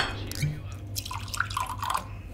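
A glass clinks at the start, then liquid trickles and drips into a glass in a run of short blips during the second half, over a low steady hum.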